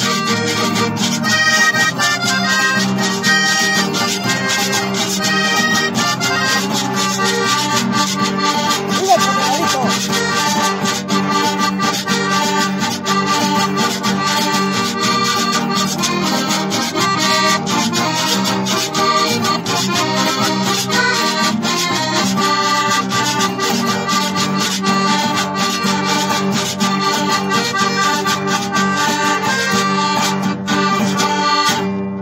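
Accordion-led band playing traditional music, with a steady beat on steel timbales, cymbal and cowbell and a guitar underneath.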